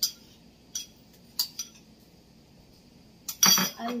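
A spoon clinking against a small bowl as ingredients are tapped out of it into a wok: a few sharp, separate clinks in the first couple of seconds, then a louder clatter near the end.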